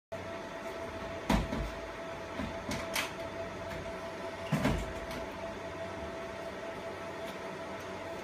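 Fiber laser marking machine running as it marks a stainless steel plate: a steady hum with a thin, steady whine. A few knocks break in, the loudest just over a second in and about four and a half seconds in.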